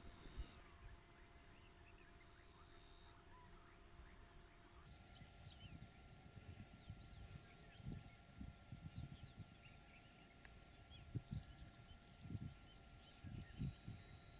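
Near silence: faint outdoor ambience with faint high chirps and a few soft low thumps in the second half.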